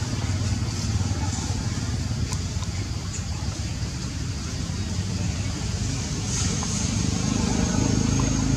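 Steady low rumble of a motor engine running, with indistinct voices. A thin high steady tone joins about six seconds in.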